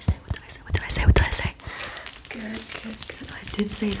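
Close rustling, brushing and clicking right on the microphone, with a heavy thump about a second in, as hair, clothing and a cloth tape measure brush against it. Soft whispered speech follows in the second half.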